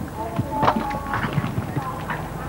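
Hoofbeats of a horse cantering on turf, a run of irregular thuds, with voices of spectators in the background.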